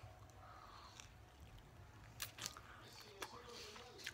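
Faint mouth sounds of a person biting into and chewing soft, wet food, with a few short moist clicks in the second half.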